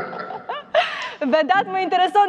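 People talking, with a short breathy laugh near the start, then a voice speaking steadily from about the second half.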